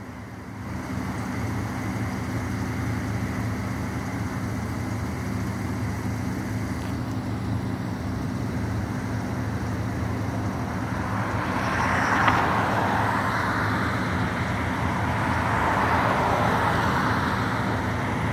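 Road traffic noise: a steady low hum with a vehicle going past, swelling louder a little after the middle.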